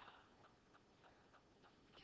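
Near silence: room tone with about half a dozen faint, irregular ticks.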